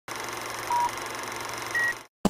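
Film countdown-leader sound effect: a steady hiss with two short beeps, a lower one about a third of the way in and a higher one near the end.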